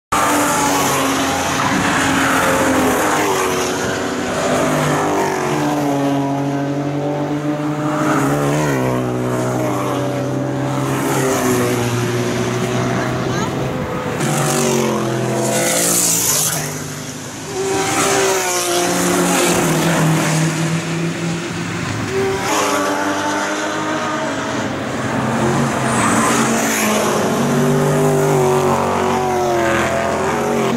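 Race car engines passing one after another, a loud run of exhausts rising in pitch under acceleration and dropping back at gear changes. There is a brief lull about halfway through before the next cars arrive.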